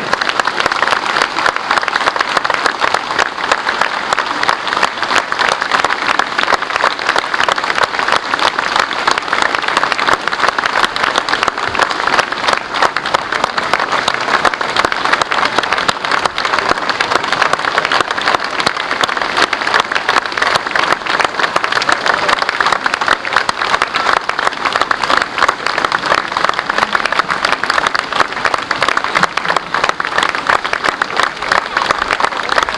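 Audience applauding steadily: many hands clapping at once in a dense, unbroken stream.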